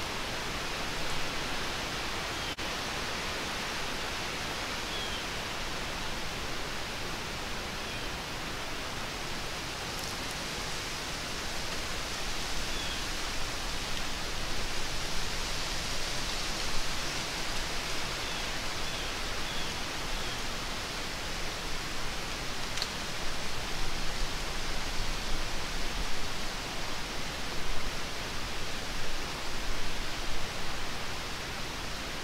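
Steady hissing background noise that grows uneven in the second half, with a few faint high chirps.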